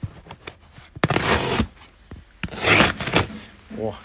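Cardboard courier box sealed with packing tape being opened by hand: two tearing, scraping rips, one about a second in and one near three seconds, with small clicks and knocks of handling in between.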